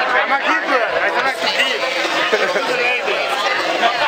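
Several people talking over one another, an indistinct chatter of voices with no clear words.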